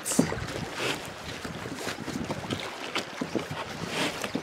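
A backpack being shoved and crammed into a plastic kayak's hatch: fabric rustling and scraping against the hull, with irregular knocks, the sharpest just after the start, over wind on the microphone.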